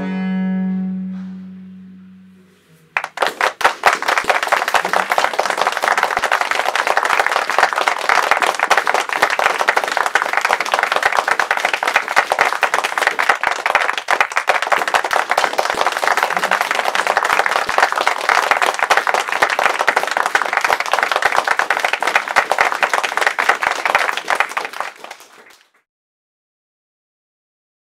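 A viola da gamba's final bowed low note held and dying away, then, about three seconds in, audience applause that runs on steadily for over twenty seconds and fades out near the end.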